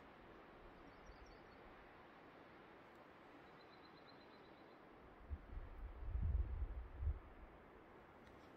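Quiet outdoor ambience with faint bird calls: a few high chirps about a second in and a short high trill around the middle. Then, a little after five seconds in, a low rumble on the microphone lasts for about two seconds and is the loudest thing heard.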